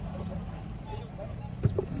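Steady low background hum, with a single sharp click about one and a half seconds in and a brief voice sound just after.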